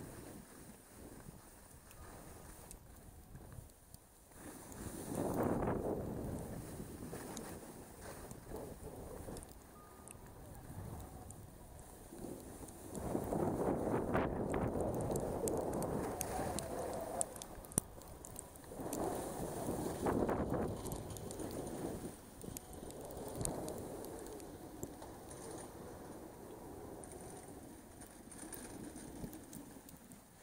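Skis sliding and scraping on packed snow during a downhill run, swelling and fading several times, with wind on the microphone.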